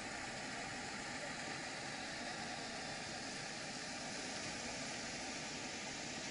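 Steady rushing of muddy floodwater running fast and churning over a flooded road and streambed.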